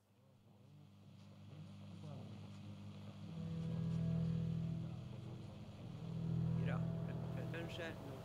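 Ambient track fading in from silence: a low steady drone of held tones that grows louder, with faint voice-like sounds and a few short chirps over it near the end.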